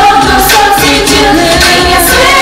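A girl group's female vocals over a K-pop dance track with a steady beat of about two beats a second.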